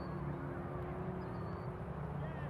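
Open-air ambience at a youth soccer game: faint distant voices of players and spectators over a steady low hum, with two brief faint high chirps.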